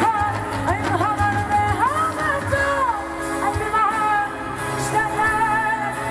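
A live pop band playing, with drums and electric guitar behind a woman singing lead into a microphone. Her melody slides and bends between notes.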